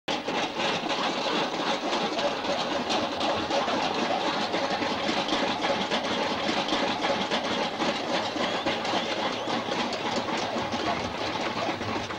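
Film projector running with a steady, rapid mechanical clatter.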